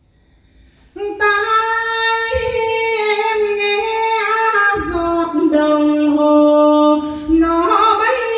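A woman singing a Quan họ folk melody solo, without accompaniment, starting about a second in. She holds long, ornamented notes that step down in pitch.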